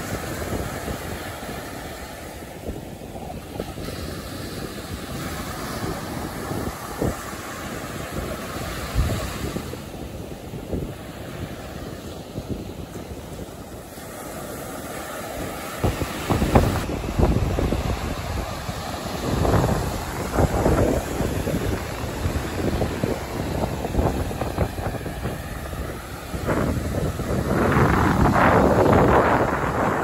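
Small ocean waves breaking and washing up a sandy beach, with gusty wind buffeting the microphone. The surf swells louder in waves, loudest near the end as a wave breaks and rushes in.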